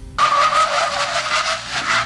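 A car's tyres screeching in a hard-braking skid, the sign of a sudden emergency stop. It is one steady screech of under two seconds that starts just after the opening and cuts off near the end.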